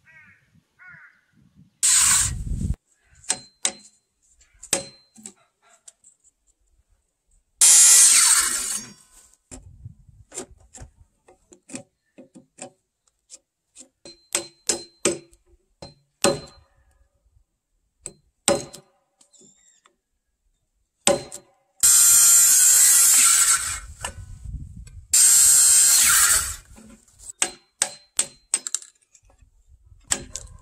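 Hand chisel being struck and driven into a softwood timber joint: a string of sharp, irregular knocks, some with a brief metallic ring. Four loud bursts of hissing noise, each one to two seconds long, break in between.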